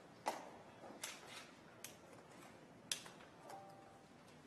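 A few sharp taps and clicks, four or five in all at uneven spacing, over quiet room tone, with a brief faint steady tone near the end.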